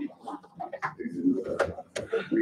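Indistinct voices of people talking in a room, with a few sharp knocks in the second half.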